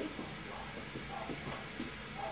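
Steady low hiss of room noise, with only faint brief sounds over it.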